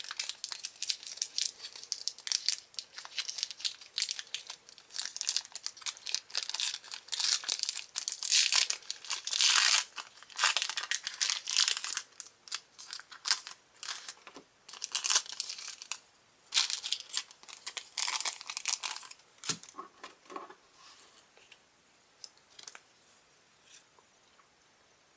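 Foil trading-card booster pack being torn open and crinkled by hand, in many short, irregular crackling rustles that thin out to a few faint ticks about twenty seconds in.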